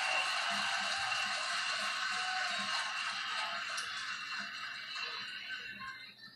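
Music from a wrestling broadcast heard through a television's speaker, a steady sustained wash with no bass that fades down toward the end.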